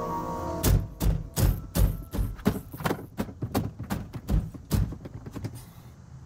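A held music chord stops about half a second in, and a run of dull thumps follows, about three a second. The thumps weaken toward the end.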